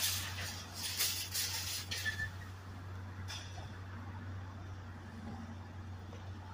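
Police patrol car's engine idling, a steady low hum. Rustling from the phone being handled close to the car in the first two seconds, and once more about three seconds in.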